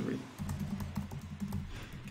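Typing on a computer keyboard: a quick, steady run of keystrokes as a line of code is typed.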